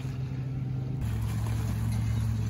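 A steady low hum, engine-like, over a faint wash of noise; its pitch drops slightly about a second in.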